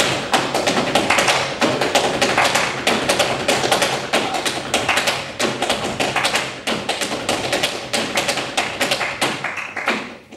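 Flamenco footwork (zapateado) in a soleá: fast, dense heel and toe strikes on a stage floor, many per second. Hand-clapping (palmas) and flamenco guitar run beneath it.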